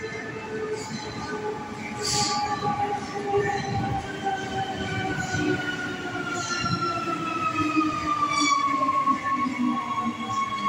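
Rome Metro train pulling into an underground station and slowing down, with rumbling wheel-and-rail noise and a whine that falls in pitch as it slows.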